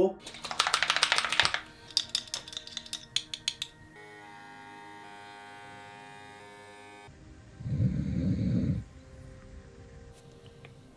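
Clatter and clicks of small paint bottles and a handheld airbrush being handled on a desk, followed by a steady hum of several held tones that cuts off suddenly. Near the end comes one short, low, breathy snore or sigh from a spaniel asleep in its bed.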